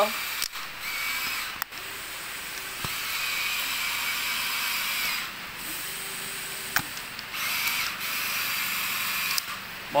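Small electric toy motor whining in two runs of about a second each, with a few sharp clicks, over a steady hiss.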